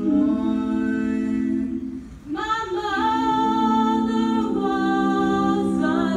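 A small group of girls singing a cappella in close harmony through microphones, holding long chords; the voices break off briefly about two seconds in, then come back on a new chord.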